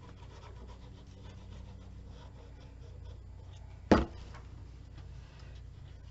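Faint rubbing of a hand pressing glued paper flat on a cutting mat, with one sharp knock just under four seconds in.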